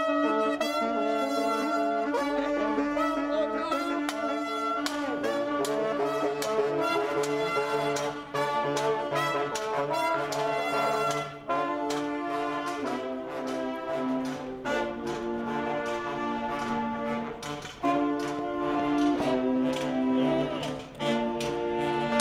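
Small street band of saxophones and brass horns (trumpet, baritone horn) playing a tune in held chords over a bass line, starting on a count-in of "four".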